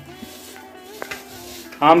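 Faint background music with a single light clink about a second in, from raw mango pieces being mixed by hand in a steel bowl; a man's voice begins near the end.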